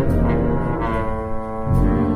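Trombone playing held melody notes, some bending slightly in pitch, with big band accompaniment and a bass line underneath.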